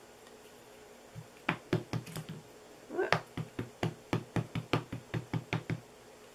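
Ink pad dabbed repeatedly onto a rubber stamp mounted on an acrylic block to re-ink it: a quick run of light taps, about five a second, starting about a second and a half in and stopping just before the end.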